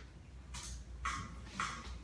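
Faint backing-track count-in: a light hi-hat-like tick about twice a second over a low hum, just before the song starts.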